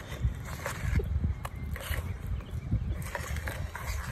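Wire whisk beating a thick cornstarch, baking soda and water paste in a plastic bowl: uneven knocks and scrapes a few times a second as the whisk is worked hard through the stiff, glue-like mixture.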